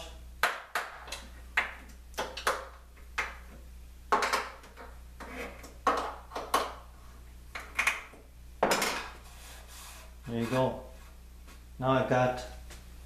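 Rapid-action clamps and wooden workpieces being handled and set down on a worktable with aluminium extrusion: an irregular string of sharp clicks and knocks, some with a short metallic ring.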